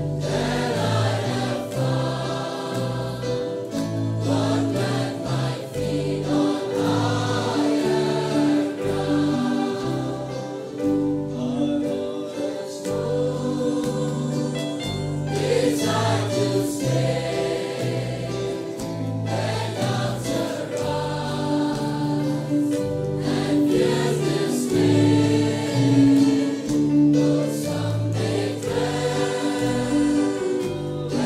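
Choir singing a gospel worship song, in held chords that change every second or so.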